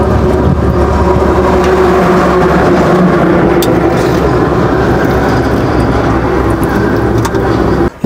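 A motor vehicle's engine running steadily at close range, a loud, even low drone with a constant hum.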